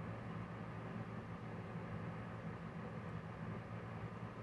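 A steady low hum with a faint hiss over it, unchanging throughout: the background drone of a room at night.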